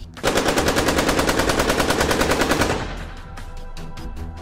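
A burst of automatic gunfire as an outro sound effect: a rapid, even stream of shots at about a dozen a second, lasting about two and a half seconds and then stopping.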